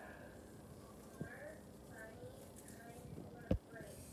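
Faint voices in the background, with a small knock a little over a second in and one sharp knock about three and a half seconds in.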